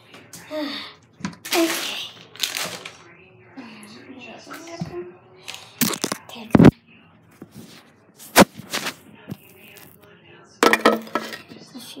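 Handling noise from a phone camera being picked up and moved around: rustles and bumps, with several sharp knocks in the second half, and some quiet speech in between.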